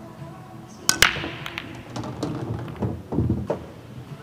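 Nine-ball break shot: the cue tip strikes the cue ball and a split second later it smashes into the racked pool balls with a loud crack about a second in. A scatter of ball-on-ball clicks and cushion knocks follows as the balls spread across the table.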